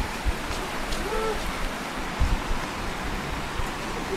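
Outdoor open-air ambience: a steady rushing noise with low buffets of wind on the microphone, and a faint short hooting call about a second in.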